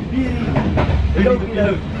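Passenger train running: a steady low rumble heard from inside the carriage, with men laughing over it.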